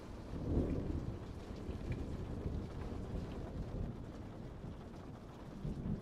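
A low rumbling noise with no music, swelling about half a second in and again near the end.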